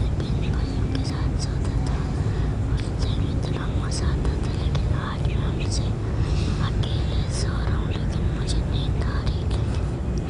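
A steady low rumble with many short, faint, indistinct voices scattered over it.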